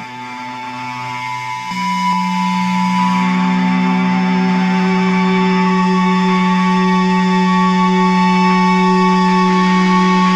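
Music: sustained droning electric-guitar tones with no drums. A deep held note comes in about two seconds in and stays steady as the sound swells louder, the slow opening of a grindcore track.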